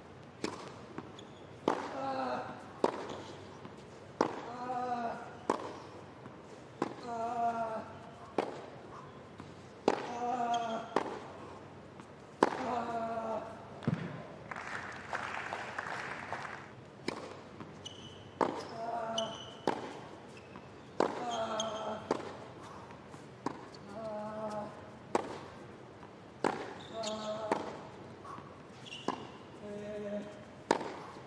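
Tennis rallies on a hard court: racket strikes on the ball about once a second, many followed by a player's short grunt on the shot.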